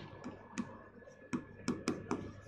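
Stylus tapping and clicking against a pen-tablet screen while handwriting: about six light, irregular clicks, most of them in the second half.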